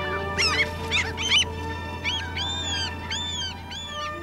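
Gulls calling over held orchestral string notes. A quick run of sharp squeals comes about half a second in, then four drawn-out, arching cries in the second half.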